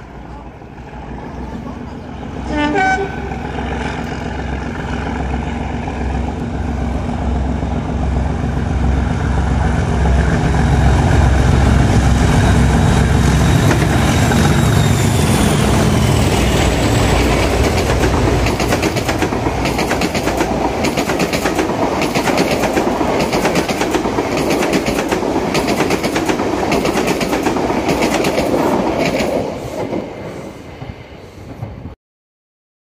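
Diesel-hauled passenger train passing through a station: a short horn blast about 2.5 s in as it approaches, then the locomotive's diesel engine growing louder as it comes close. After that comes a steady clickety-clack of the coaches' wheels over the rail joints, which cuts off near the end as the train clears.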